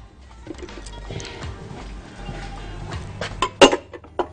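Kitchenware being handled while mashed potatoes are moved into a larger bowl: scattered light clinks, then a few sharp knocks near the end. Soft background music runs underneath.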